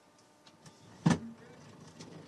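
Faint room tone in a pause of speech at a desk microphone, broken about a second in by one short, sharp sound close to the microphone.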